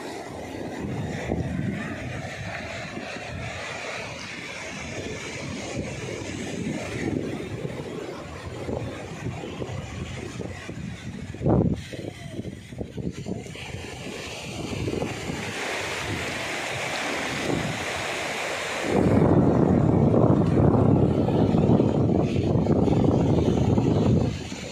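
Sea surf washing up a sandy beach with wind buffeting the microphone, and a brief thump about halfway through. The wind noise grows much louder for the last five seconds or so.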